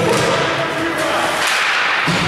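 Hockey sticks cracking and clacking against the puck and ice at a faceoff, a few sharp strikes echoing in the arena, followed by skates scraping the ice as play gets under way. Arena music dies away within the first second.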